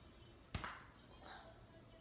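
A single sharp smack from a thrown baseball about half a second in, then a much fainter sound around a second later.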